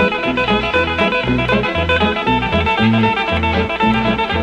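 Instrumental break of a 1950s rockabilly record: a picked guitar lead over a bass line that repeats about two to three notes a second, with no singing.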